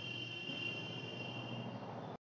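A steady high-pitched whine of several close tones, insect-like, over faint room noise, fading a little toward the end.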